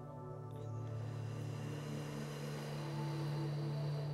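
Soft ambient music with sustained tones. About a second in, a long hissing breath starts, drawn in through the open mouth in sitali pranayama, the cooling breath in which air is sucked in over the tongue.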